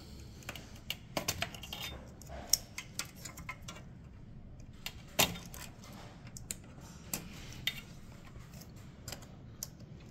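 Irregular small metallic clicks and scrapes as a flat screwdriver and fingers pry faston spade connectors off an espresso machine's main on-off switch, with one sharper click about five seconds in.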